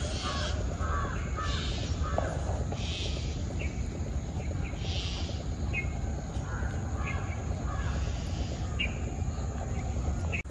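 Crows cawing repeatedly, a call every second or two, with short chirps of smaller birds and a steady low rumble underneath.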